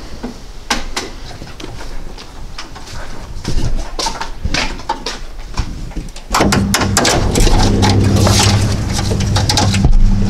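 Scattered clicks, clunks and rattles of hand tools and plastic trim as speakers and wiring are worked out of a car's rear parcel shelf. About six seconds in, a steady low hum sets in under the handling noise.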